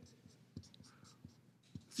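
Felt-tip marker writing on paper: faint scratching strokes with a few light taps as characters are drawn.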